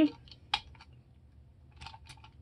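Light clicks and taps of a diecast metal excavator model being picked up and tilted by hand: one sharp click about half a second in, then a few fainter ticks near the end.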